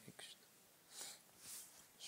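Near silence, with a soft click at the start, then two faint breathy whispers from a man about one and one and a half seconds in.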